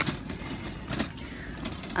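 Steady low vehicle-engine rumble, with two short clicks about a second apart.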